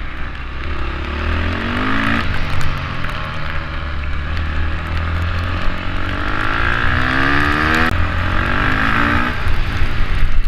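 KTM supermoto motorcycle engine accelerating hard, heard on board: the revs climb in rising sweeps that break off with gear changes about two seconds in and again near eight and nine seconds.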